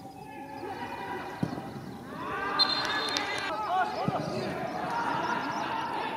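Footballers shouting to one another during a goalmouth scramble, several voices overlapping and growing busier about two seconds in. A football is kicked twice, once about a second and a half in and again about four seconds in.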